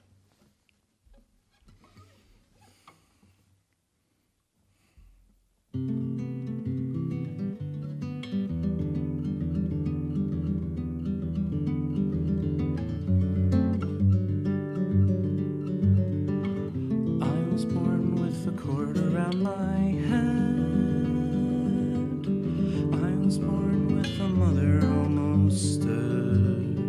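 Near silence for about five seconds, then the music starts suddenly: a nylon-string classical guitar picking a pattern over sustained low synth chords.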